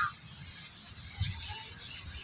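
Quiet outdoor ambience with a faint bird call just at the start and a few faint high chirps about a second in.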